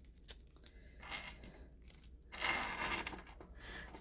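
Faint handling noise: a small plastic packet rustling in the hands, with a few light clicks of small parts, a little louder about two and a half seconds in.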